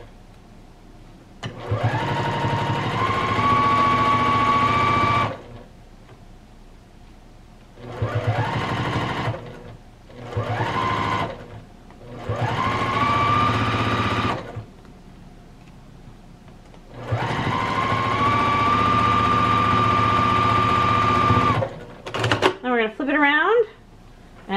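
Juki TL-2010Q straight-stitch sewing machine stitching down a folded fabric strip in five separate runs. Each run starts with a rising whine that settles to a steady pitch, holds for one to four seconds, then stops; the longest run comes near the end.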